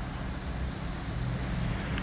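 City street traffic noise: a steady low rumble of vehicle engines.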